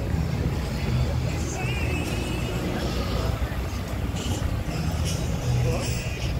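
Cars driving slowly past on a town street: a steady low rumble of engines and tyres, with indistinct voices mixed in.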